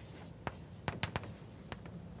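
Chalk writing on a blackboard: a handful of short, sharp taps and strokes as the chalk meets the board, over a quiet room.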